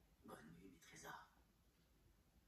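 A faint, soft voice saying two short words in quick succession in the first second, heard from a television's speaker.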